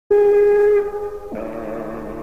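A single held note from a wind instrument. It starts abruptly, is loudest for most of a second, then weakens. About a second and a half in it gives way to a lower, fuller pitched sound as devotional chanting begins.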